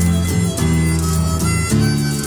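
Instrumental passage of a progressive rock song with no singing: guitar over a sustained bass line, the chords changing about every half second.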